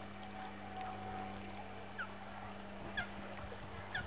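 A steady low hum, with short, sharp falling chirps about once a second in the second half, the loudest sounds, like a bird calling.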